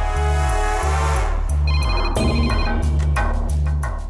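Dramatic background music with a steady pulsing bass, over which a desk telephone rings briefly about halfway through.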